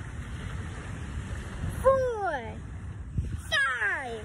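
A person's voice lets out two drawn-out cries that fall in pitch, about two and three and a half seconds in; the second one is louder. These are reactions to bare feet on hot beach sand. Wind rumbles on the microphone throughout.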